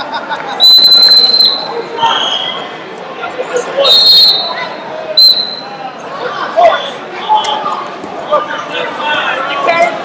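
Sharp referee whistle blasts in a large hall full of wrestling mats: a long blast about half a second in, a shorter, lower one at about two seconds, another near four seconds and a brief chirp just after five. Crowd and coaches' voices and shouts run underneath throughout.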